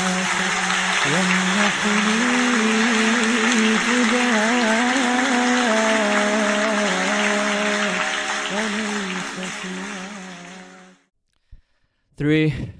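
Audience applause with background music carrying a wavering sung melody, fading out near the end.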